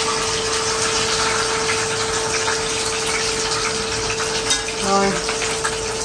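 A large fish frying in hot oil in a pan, sizzling steadily with fine crackles and spits: the fish went in still slightly wet. A steady hum runs underneath.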